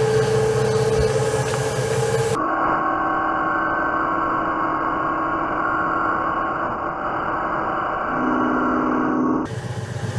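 Metal lathe running through a boring pass on an aluminium hub, a steady machine hum. About two seconds in, the sound changes abruptly to a muffled steady drone with different tones, which drop lower near the end and then cut off suddenly.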